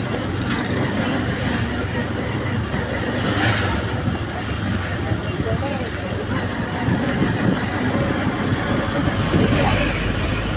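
Engines of a convoy of police vehicles running as they move slowly, a steady low rumble under a haze of road noise, with people's voices mixed in.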